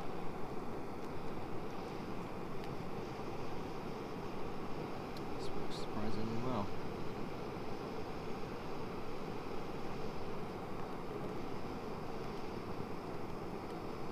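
Backpacking canister stove burning on high, a loud, steady rushing hiss from the burner. A brief voice sounds about six seconds in.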